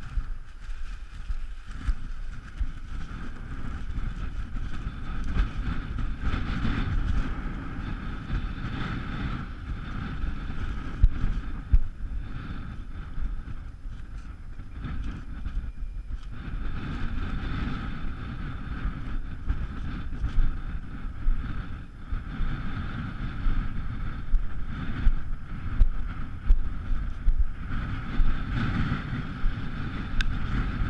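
Wind buffeting the microphone in gusts over the steady hum of a model airplane's motor and propeller.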